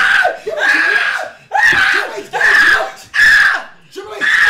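A person screaming loudly in a string of about five short yells, each about half a second long.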